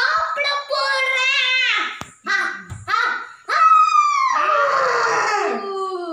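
A young girl's high-pitched voice making long, sliding vocal calls without clear words, voicing the stuffed-toy puppets; the last call, about four seconds in, is the longest and falls in pitch.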